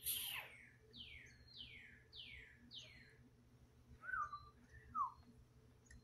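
Faint bird song: four downslurred whistled notes about half a second apart, then two lower, shorter notes near the end. A brief louder sound comes right at the start.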